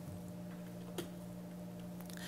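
A single sharp click about a second in, from a laptop key or mouse on the lectern as a slide is advanced, over a faint steady electrical hum.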